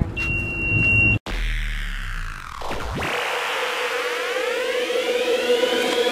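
A motorized shopping cart's reverse-warning beeper sounding a steady high beep, cut off about a second in. It is followed by electronic music sweeps, first falling and then rising over a held tone, building into the start of an electronic track.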